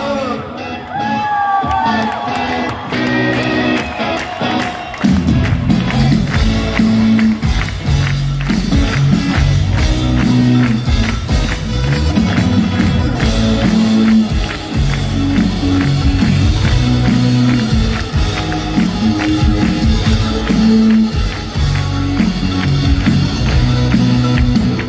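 Live indie-rock band music through a concert PA, heard from among the audience, with crowd voices mixed in. The opening seconds are sparser, then drums and bass come in about five seconds in with a steady beat.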